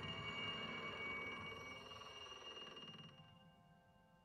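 Soft piano music fading out: the last struck note rings on with a high ringing tone and dies away to silence about three seconds in.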